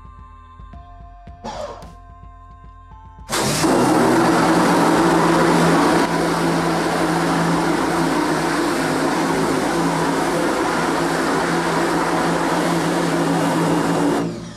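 Electric pressure washer switching on about three seconds in and running steadily, a constant motor hum under the hiss of the water jet spraying a screen-printing screen to wash out the unexposed emulsion.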